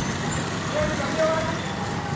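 Steady background noise, with people's voices coming in about a second in.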